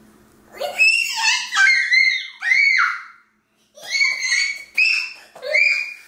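A toddler's high-pitched excited squeals and shrieks, in two runs with a brief break about three seconds in.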